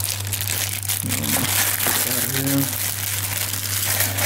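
Clear plastic bag crinkling as it is handled and pulled off a camera lens, a dense run of rustles and crackles.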